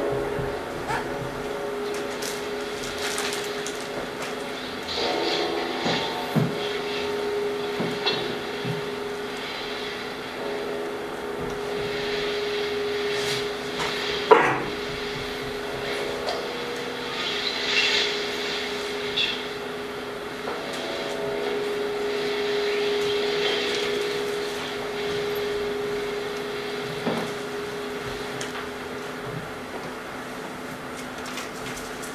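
Film soundtrack music with long held low notes, played over loudspeakers in a room; a single sharp knock about 14 seconds in.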